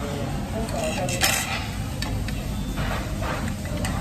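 A metal spoon scraping and clinking against a ceramic plate while scooping fried rice. There is a louder scrape about a second in and a run of shorter scrapes near the end, over a steady low room hum.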